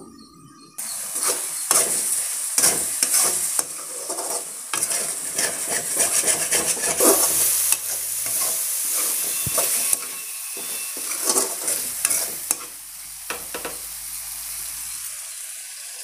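A spiced masala sizzling in oil in a metal frying pan while a spoon stirs and scrapes it, with irregular clinks of the spoon against the pan. The sound starts about a second in.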